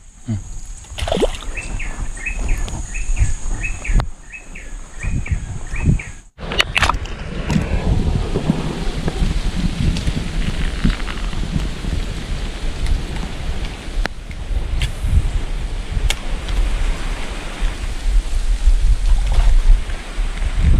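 Outdoor river-bank sounds. A bird repeats a short call about eight times over a steady high-pitched drone. After a sudden break about six seconds in, a continuous rushing noise with a low rumble takes over.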